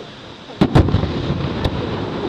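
Aerial firework shells bursting: two sharp bangs close together a little over half a second in, then a low rumble and another crack about a second later.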